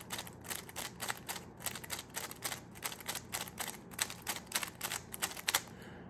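WRM V9 magnetic speedcube with maglev in place of its springs, turned quickly in the hands: a rapid, irregular string of light plastic clicks as the layers snap into alignment, several a second, in runs of repeated slice turns. Its turning is so smooth.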